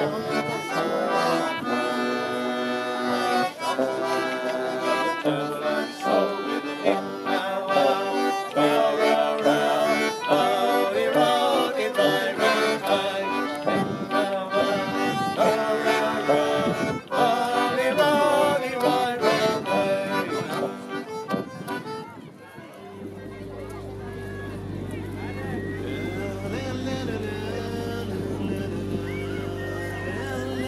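A diatonic button accordion leads a lively traditional tune, with other instruments of a small band underneath. About 22 seconds in the music stops and gives way to a quieter, steady background with a low hum.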